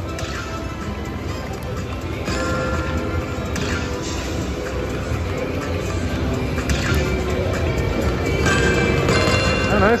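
Liberty Link slot machine playing its free-spins bonus music, with bright chimes at several points as the reels stop and diamond prize symbols land.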